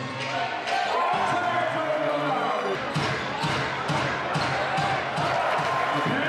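A basketball bouncing on a hardwood court, a run of short thuds a fraction of a second apart in the second half, over the voices and calls of an arena crowd.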